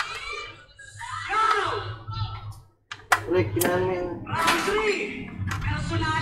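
Indistinct voices in the background over a steady low hum; the sound drops out for a moment about two and a half seconds in, then a sharp click.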